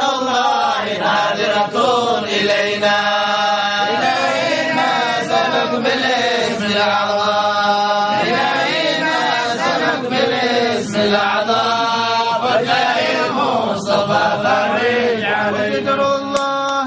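Men's voices chanting an Arabic devotional hymn in long, drawn-out melodic phrases, without a break.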